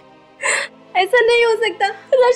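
A young woman crying: a sharp gasping breath about half a second in, then sobbing with her voice wavering from about a second in.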